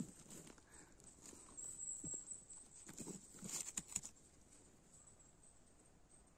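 Faint rustling of moss and pine litter, with a few short crackles of twigs in the first four seconds, as a hand works a young bolete (borowik) out of the forest floor.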